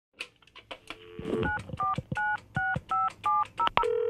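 Touch-tone telephone keypad dialing: a few sharp clicks, a short low tone, then about eight two-tone keypad beeps at roughly three a second.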